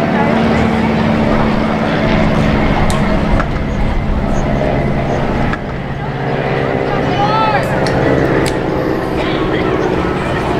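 Indistinct shouts and voices of players and spectators at an outdoor soccer match, over a steady low hum.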